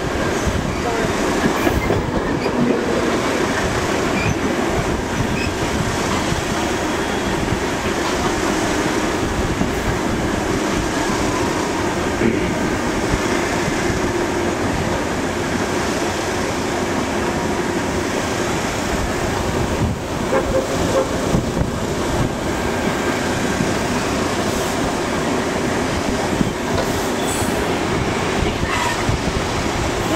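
Passenger train cars rolling along the track, heard from beside the moving car: a steady rush of wheel and rail noise mixed with wind, with a few sharp clicks along the way.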